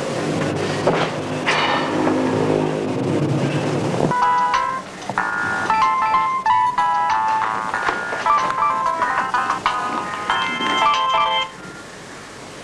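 A mobile phone ringtone plays a beeping electronic melody from about four seconds in, stopping abruptly just before the end. A low humming sound comes before it.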